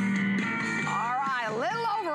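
Guitar music playing from a Studebaker retro boombox's CD player, picked up by the studio microphones. A voice comes in over the music about halfway through.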